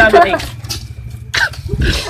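Short bursts of voices from a small group, with a brief loud exclamation about a second and a half in, over a low rumble from the phone being handled.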